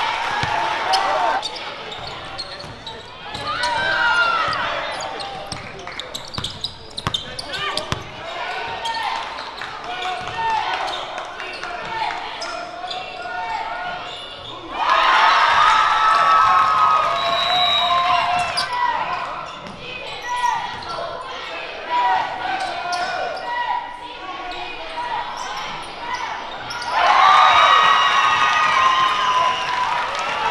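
Live gym sound of a basketball game: a ball dribbling on the hardwood court amid shouting voices from players and crowd. The voices get louder in two stretches, one about halfway through and one near the end.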